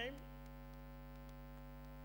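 Steady low electrical mains hum in the podium microphone's sound system, a constant tone with a series of evenly spaced overtones; the tail of a spoken word sits at the very start.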